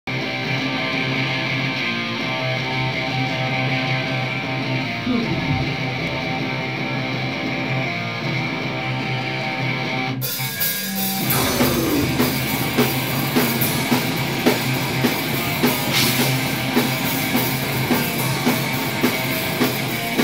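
A live rock band with electric bass and electric guitar. For the first half the guitars hold sustained, droning chords with no drums. About halfway through the sound changes abruptly and the drum kit joins, and the full band plays on with a steady beat of about two drum hits a second.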